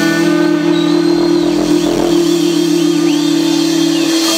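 Amplified electric guitar holding a last chord that rings on steadily with the drums stopped, the closing chord of a garage-rock song. Fainter, higher tones waver above the held chord.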